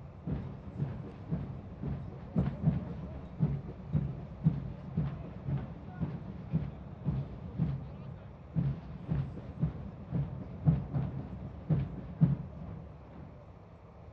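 Steady low drum beat, about two strokes a second, each stroke a deep thump; the beat stops near the end, leaving only a low rumble.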